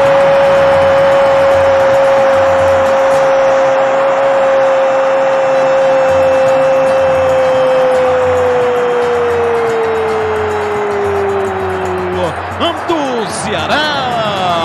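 Brazilian football commentator's long drawn-out goal cry, 'gooool', held on one note for about twelve seconds and sagging in pitch near the end. Short rising and falling vocal calls follow near the end.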